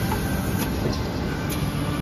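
Steady low rumble of running packaging machinery, with a few faint clicks.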